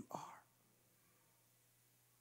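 A man's voice ends a drawn-out word, then a pause of near silence, with only a faint steady low hum underneath.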